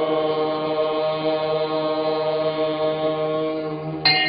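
A long chanted note held steadily on one pitch, with no words, cut off at the very end as a bright, chime-like musical sting begins.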